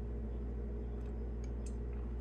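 Steady low hum of room tone with a few faint ticks about a second in and near the end.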